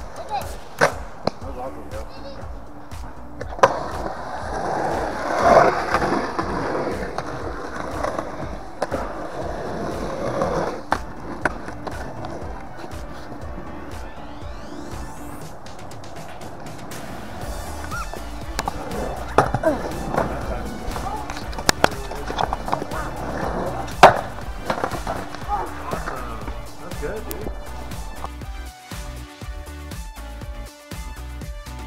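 Skateboard wheels rolling on concrete, with repeated sharp clacks of the board and wheels hitting the concrete. The loudest clack comes about four-fifths of the way through.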